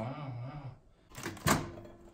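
A person's low, drawn-out voice, then a short gap and an exclaimed "Wow!" about one and a half seconds in.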